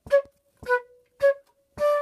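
Flute playing the opening notes of a study against metronome clicks a little under two a second, one click per quaver. Three short notes fall one on each click, then a D starts near the end and is held for two clicks.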